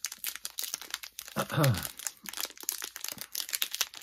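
Hockey card pack wrapper crinkling and tearing as it is pulled open by hand, a dense run of small crackles throughout. A short burst of voice about a second and a half in.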